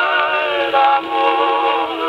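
A 78 rpm record playing acoustically on a 1915 Columbia Grafonola wind-up phonograph: a singer holds long notes with a wavering vibrato, moving to new notes about a second in. The sound is muffled, with no high treble.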